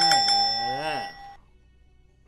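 Electronic bell-ringing sound effect, a steady high chime with a fast rattle of about five strikes a second, cutting off a little over a second in. It is set off by a button to mark the chosen answer.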